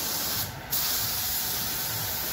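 Compressed-air gravity-feed paint spray gun hissing steadily as it sprays paint onto a car's door panel, cutting out briefly about half a second in before resuming.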